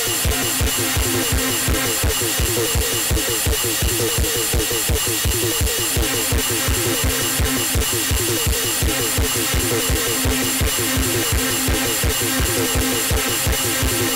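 Live electronic dance music: a steady kick drum on every beat under a fast, repeating synth sequence, with a held low synth note coming in about six seconds in.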